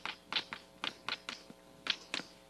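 Chalk tapping and scraping on a blackboard as words are written: about eight short, irregular taps.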